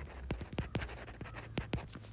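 Stylus tapping and scratching on a tablet screen while handwriting a word: a quick, uneven series of about ten light clicks over two seconds, with a faint steady low hum underneath.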